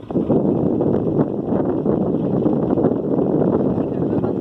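Steady rushing noise of a motor river ferry under way on the river, with wind on the microphone.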